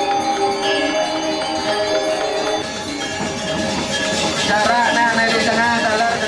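Balinese gamelan of bronze metallophones and gongs playing steady ringing tones. About halfway through, a voice joins, singing with a wavering pitch.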